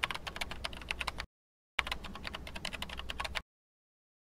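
Fast typing on a computer keyboard, a rapid clatter of key clicks in two bursts of about a second and a half each, with a short pause between.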